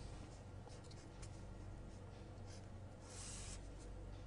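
A pen drawing lines on paper: faint scratching strokes, about a second in and again near three seconds, over a low steady hum.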